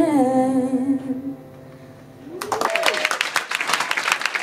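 A woman's voice holds the song's last note, wavering slightly, then fades out. After a brief lull the audience breaks into applause, with a cheer rising over the clapping.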